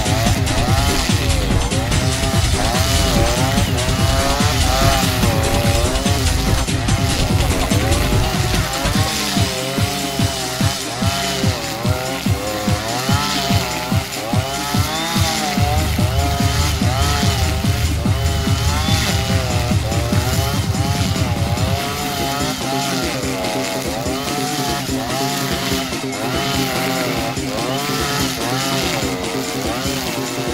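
Husqvarna 555RXT two-stroke brush cutter running at high revs while cutting tall grass with round trimmer line. Its whine rises and falls about once a second as the engine loads and unloads with each sweep through the grass.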